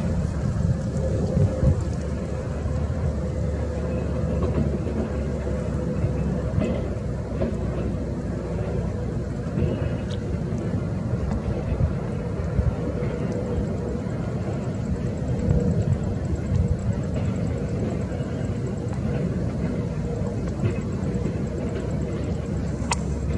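Low, steady rumble of a distant Airbus A321neo airliner's jet engines on final approach, mixed with wind buffeting the microphone, which makes the level wobble.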